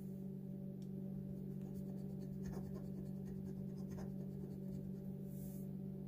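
A few faint scrapes of a metal bottle opener's edge across a lottery scratch-off ticket, the last a longer hiss near the end, over a steady low hum.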